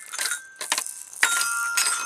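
Toy glockenspiel struck irregularly by a toddler: several uneven strikes on its metal bars, each note ringing on, with a longer ringing note a little past halfway.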